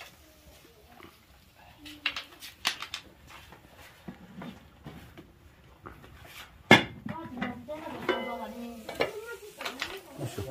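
Metal utensils and cooking pots clanking: a few light knocks about two to three seconds in and one loud clank near seven seconds.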